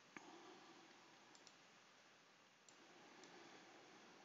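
Near silence: faint room tone with a few small, sharp clicks, one just after the start and several tiny ones later.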